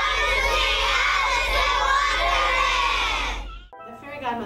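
A busload of children shouting and cheering all at once inside a school bus, with a steady low rumble underneath. It cuts off suddenly near the end.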